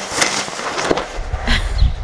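Strong wind buffeting the microphone: a loud low rumble that builds from about a second in, with a few short sharp noises over it.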